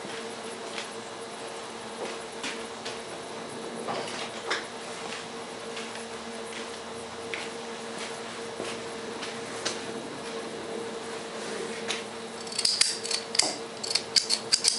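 Punctured lithium iron phosphate cell venting and boiling its electrolyte as it discharges internally: a steady fizz with scattered crackles, over a steady low hum. Near the end a quick run of sharp clicks starts, from a utility lighter being brought in to ignite the vented fumes.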